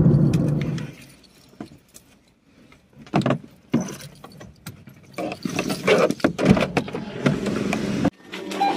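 Car cabin road noise that stops about a second in, followed by a bunch of car keys jangling and clicking in the hand, a couple of sharp clicks first and then a busier run of jingling.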